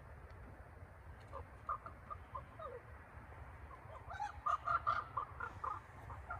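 Bald eagle calling: a series of short notes, spaced out at first, then a faster, louder string of notes about four seconds in.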